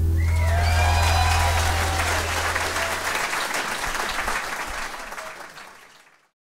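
Audience applause with a few shouts at the end of a live bluegrass song, over the band's last low note ringing out for about three seconds. The applause fades out toward the end.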